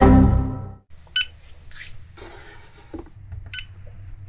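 A short, loud music sting at the very start that dies away within a second, then two short electronic beeps, about a second in and near the end, from the laser engraver's touchscreen controls, over a low steady hum.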